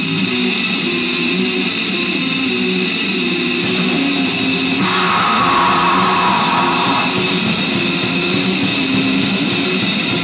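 Loud, lo-fi live black metal: distorted guitar riffing with drums, a steady high whine held through it.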